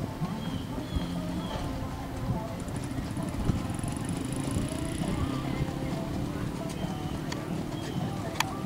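Outdoor horse-show ambience: indistinct voices of people around the ring over a steady low rumble, with a faint high-pitched pulsing whine in the middle.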